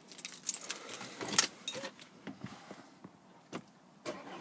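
Car keys jangling and clicking as the key is handled in the driver's seat to start the car, with a sharp click about a second and a half in and a last click shortly before the end.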